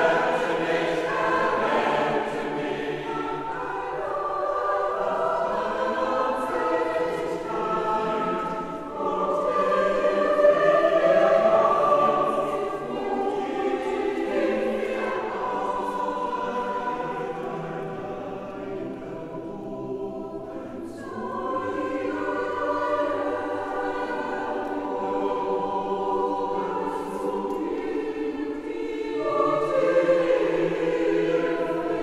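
Mixed choir singing a sacred a cappella work in a church, unaccompanied voices in sustained chords. The sound swells to its loudest around ten seconds in and falls to a softer passage near twenty seconds before building again.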